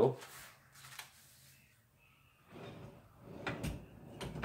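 Draw-style heat press's lower platen sliding back on its rails under the upper platen: a scraping slide from about two and a half seconds in, with a couple of sharp clicks near the end.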